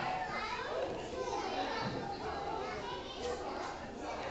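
Background babble of young children playing and people talking in a gym hall, with no single voice standing out.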